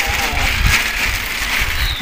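A thin plastic sheet rustling and crinkling as it is shaken, with crumbly clumps of fermented culture dropping from it into a plastic bucket. The sound is a steady crackle.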